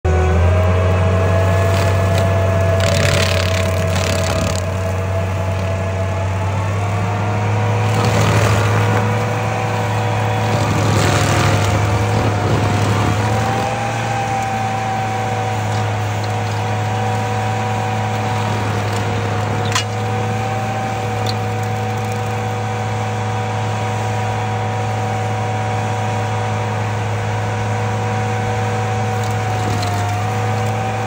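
Stump grinder's engine running steadily under load as its cutter wheel grinds into a small tree stump. Louder bursts of grinding noise come a few times in the first half.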